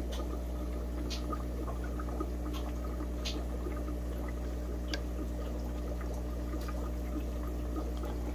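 Aquarium water running and trickling steadily, with a low steady hum underneath and a few faint ticks.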